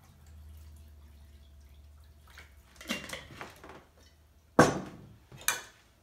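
Water poured from a glass jar into a glass measuring cup, faint at first, followed near the end by two sharp clinks of glassware, about a second apart.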